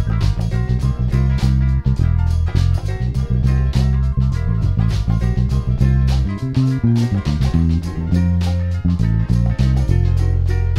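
Electric bass guitar played finger-style along to a 1960s soul record with drum kit and its own recorded bass line, the two basses locked together. A little past the middle the deepest notes drop away for about two seconds while the bass line moves up into higher notes, then the low groove returns.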